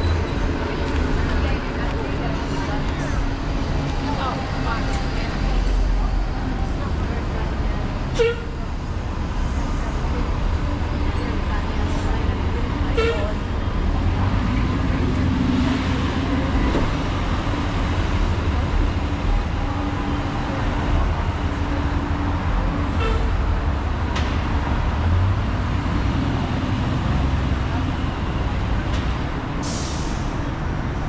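Busy downtown street ambience: a steady rumble of traffic, including a city bus, with passersby talking along the crowded sidewalk. A short sharp click stands out about 8 seconds in.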